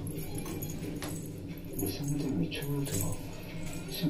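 Soft wordless vocal sounds with light, scattered metallic jingling.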